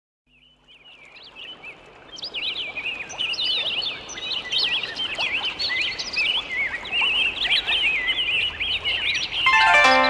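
Many small birds chirping and twittering in quick, overlapping calls, fading in from silence over the first two seconds. Near the end a Chinese zither begins plucking notes.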